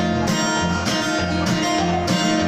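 Acoustic guitar played alone in a steady rhythm, low bass notes alternating with strummed chords.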